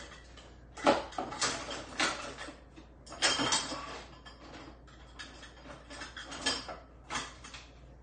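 Cutlery and dishes clinking and clattering in a kitchen: a series of separate knocks and rattles, the busiest stretch a little after three seconds in.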